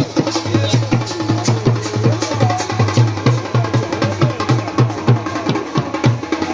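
Pahadi band music: drums beat a steady rhythm of about three strokes a second under a wavering melody line.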